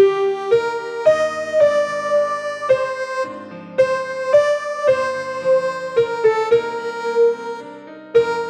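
Piano accompaniment to a slow choral anthem, with the alto part's melody played as one clear, steady keyboard line above the chords as a part-practice guide. The notes change about every half second, with held notes fading around the middle and near the end.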